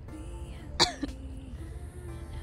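One short, sharp vocal burst from a person, cough-like, about a second in, over a bed of quiet background music.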